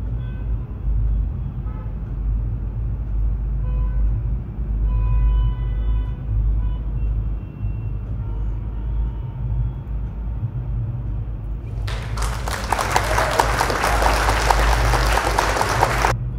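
Background noise: a steady low rumble with a few faint, brief tones in the first half, then a loud even hiss for the last few seconds.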